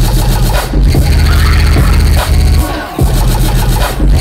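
Loud dubstep played by a DJ over a club sound system, with heavy, pounding bass. The bass drops out briefly a little past two seconds, then dips again shortly before three seconds.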